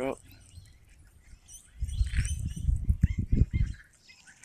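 Wind buffeting the microphone in irregular low gusts from about two seconds in, with a few faint bird chirps.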